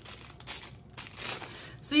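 Crinkling rustle of plastic being handled, in a couple of short bursts about half a second and a second in.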